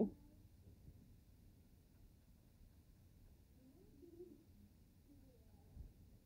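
Near silence: quiet room tone, with a faint, distant murmur of a voice about four seconds in.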